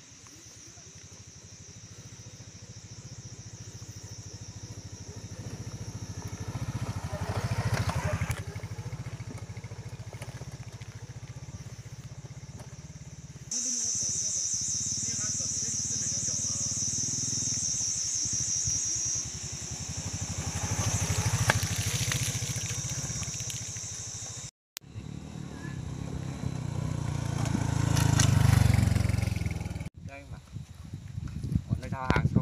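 A motor running, its sound rising and falling several times and loudest near the end, under a steady high-pitched buzz. The sound breaks off abruptly twice.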